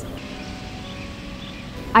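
A short pause in speech filled by a low, steady background noise with a few faint held tones.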